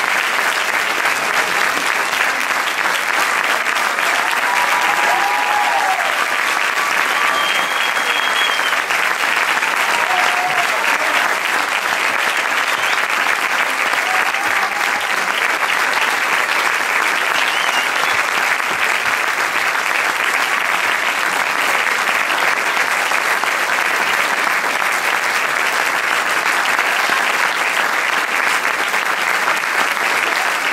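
Concert hall audience applauding, a dense, steady clapping that keeps up without a break.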